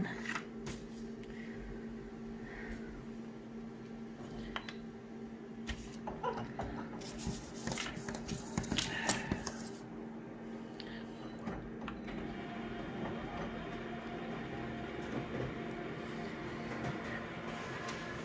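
Office photocopier humming steadily while paper rustles and a few knocks sound as the original is laid on the scanner glass. About twelve seconds in, a higher whirring joins the hum as the machine starts the copy.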